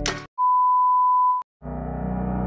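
A single steady electronic beep, one pure tone about a second long, with a brief silence after it. Near the end, sustained music starts.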